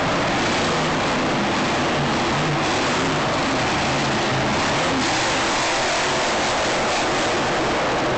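A monster truck's engine running loud across the arena floor, its low note shifting with the throttle, buried in a steady, unbroken wall of stadium noise as picked up by a phone microphone.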